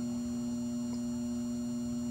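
Steady single-pitched hum from a variable-frequency PWM circuit fed by a 12 V battery charger, with faint high whistles above it: the audible sign that power is flowing through the circuit.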